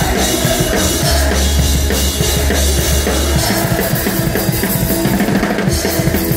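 Punk rock band playing live at full volume: fast drum-kit beat with bass drum and snare, under bass and guitars. A low bass note is held for a couple of seconds about a second in.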